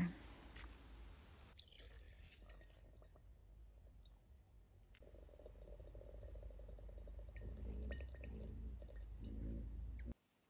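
Vodka poured from a metal measuring cup into a glass jar of chokecherries and sugar: a faint trickle that starts about halfway through and grows louder. It follows a few light clicks of handling near the start.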